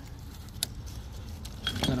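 Light metallic clinking of a hand wrench on engine hardware, with one sharp click about half a second in.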